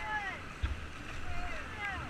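Rushing whitewater of a river rapid, with wind buffeting the microphone in low gusts, and faint distant voices calling.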